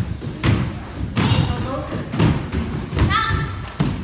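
Bare feet thudding on a wooden dojo floor about once a second as karate students step and kick in unison. A voice calls out about three seconds in.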